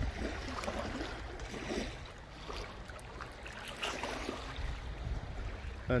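Quiet shoreline ambience: a low steady rumble with faint water sounds and a few brief, faint distant calls.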